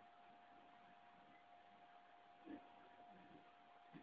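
Near silence: room tone with a faint steady high hum and a tiny faint sound about two and a half seconds in.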